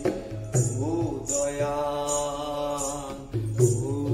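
Bangla folk song: a singer holds a long sung note over a low drum beat, with short jingling percussion strokes about once a second.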